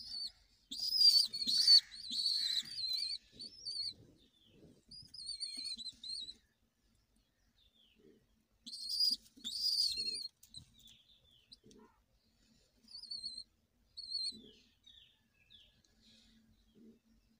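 Young pigeons (squeakers) giving thin, high-pitched squeaking calls: a long run of squeaks over the first few seconds, another burst near the middle, and a few short squeaks near the end.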